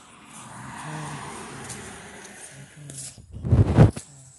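Outdoor background noise that swells and eases over a couple of seconds. Near the end comes a short, loud, low rumble on the phone's microphone, which cuts off abruptly.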